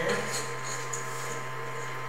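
A steady machine or electrical hum with a thin, steady high whine above it, and a few faint light ticks in the first second.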